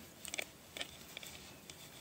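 Metal knitting needles clicking faintly as stitches are worked in wool yarn: a scattering of soft ticks, several close together in the first half-second and a few more spread through the rest.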